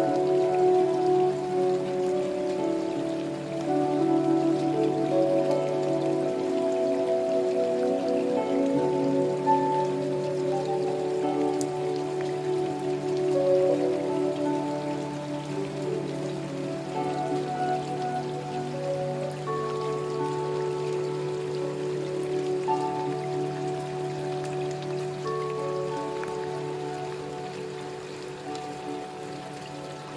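Steady rain falling, mixed with slow meditation music of long held notes over a low drone; the music grows softer near the end.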